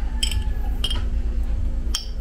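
A spoon clinking lightly against dishware about three times while chili garlic oil is spooned onto the food, over a steady low hum.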